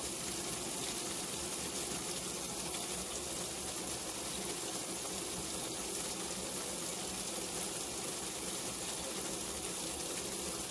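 Water gushing steadily from the fill spout of a 1960 AMC Kelvinator W70M top-load washing machine, splashing onto the clothes in the tub as the machine fills for the wash.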